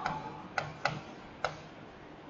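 Four sharp, light clicks at uneven intervals, the taps of a pen stylus on a writing surface as words are handwritten on a digital whiteboard.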